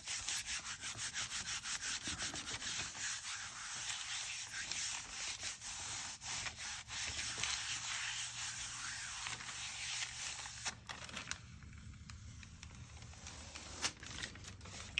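A palm rubbing thin rice paper down onto a gel printing plate to burnish the print: a dry, hissing rub made of quick back-and-forth strokes. The rubbing thins out and gets quieter about ten or eleven seconds in.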